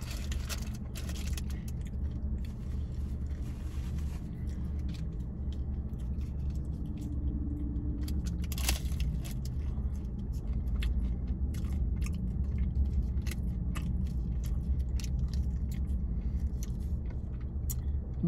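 Close-up chewing and crunching of a crisp fried taco shell: many small crackles, with one sharper crunch near the middle. A steady low rumble runs underneath.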